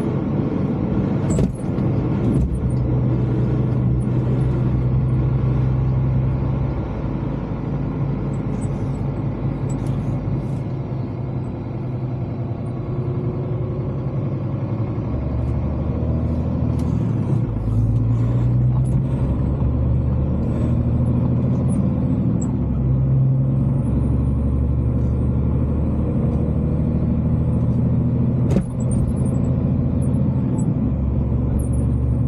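Heavy goods lorry's diesel engine heard from inside the cab while driving, a steady low hum whose note steps up and down several times as it changes gear and speed. A few sharp knocks cut through, the clearest about a second and a half in and just before the end.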